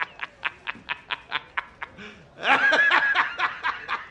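A man laughing hard in quick, even "ha-ha-ha" pulses, about four or five a second, breaking into a louder, higher-pitched burst of laughter about two and a half seconds in.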